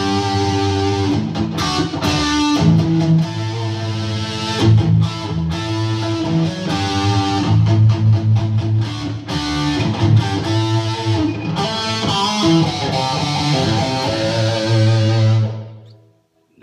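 A 1964 Gibson SG electric guitar played through an amplifier: continuous picked riffs and chords with strong low notes, ending abruptly near the end.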